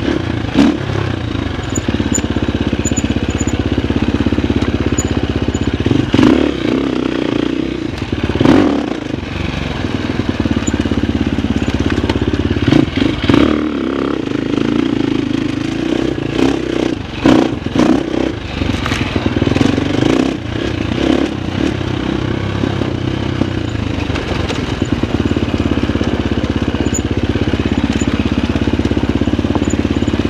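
Husqvarna FX350 dirt bike's single-cylinder four-stroke engine running at a changing throttle, rising and falling, with repeated knocks and clatter of rocks under the tyres and through the suspension.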